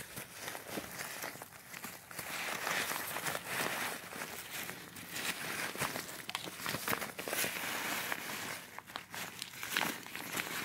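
Thin nylon fabric of a foldable packable backpack rustling and crinkling as it is pulled out of its folded pouch and opened out by hand, an irregular run of rustles and small scrapes.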